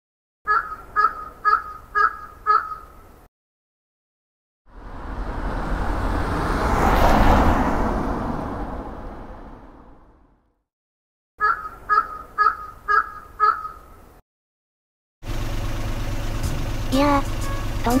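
Crows cawing, five caws about half a second apart, followed by a whoosh that swells and fades over several seconds, then the same five caws again. Near the end a steady low car-engine hum begins.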